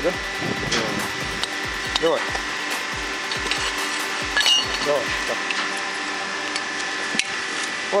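Pipe wrench straining against the seized, heat-loosened thread of an old water valve's bonnet, with a few sharp metallic clicks as the wrench grips and slips, over a steady mechanical hum.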